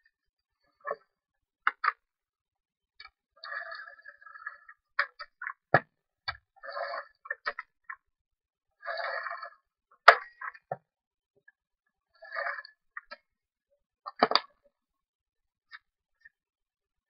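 Hands working with cardstock and craft tools: scattered clicks, taps and short rasping scrapes, with a few sharper knocks, the loudest about ten seconds in.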